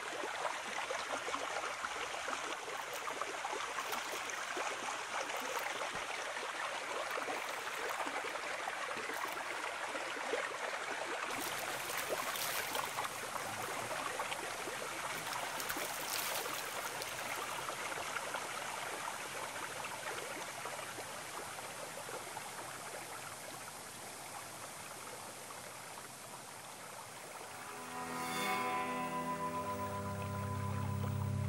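Stream water flowing steadily, with splashes about halfway through as cupped hands throw water onto a face. Low sustained music tones come in near the end.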